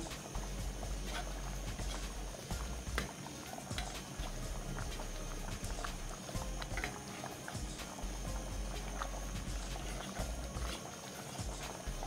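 Soup bubbling at a boil in an aluminium pot, with scattered clicks and knocks of a metal spoon and ladle against the pot and mortar as pounded yam is scooped in and stirred to thicken it.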